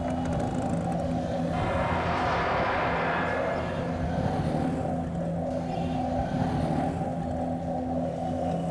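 Sustained, droning background score with steady low tones, swelling in the middle into a rushing sound for about two seconds before settling back.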